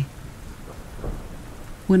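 Steady rain, with a low thunder rumble swelling about halfway through.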